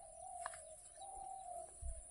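A dove cooing faintly in the background: two drawn-out low coos, the second starting about a second in. A short click comes about half a second in, and a low thump near the end.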